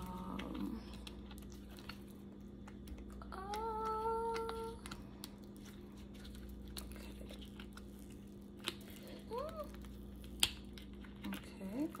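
Faint clicks and taps of a silicone mold being flexed and handled around a cured resin piece. A single hummed note of about a second and a half comes about four seconds in, and a brief rising 'hm' near ten seconds, over a steady low hum.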